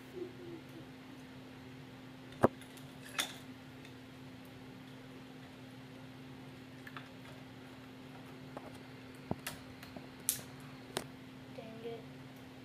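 Hard plastic Lego Bionicle parts being clicked and snapped together by hand: scattered sharp clicks, the loudest about two and a half seconds in and a cluster of them near the end. A steady low hum runs underneath.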